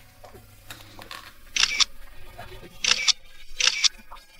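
Camera shutter firing three times, each a quick double click, about a second and a half in, near three seconds and again just after.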